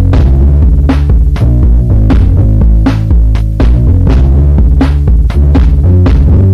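Roland Boss DR-5 drum-machine track: a loud, heavy bass line stepping between low notes under sharp drum hits, about two a second.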